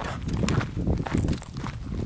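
Quick footsteps on a dirt path, a series of uneven thumps, mixed with the knocking of a handheld camera jostled at each step.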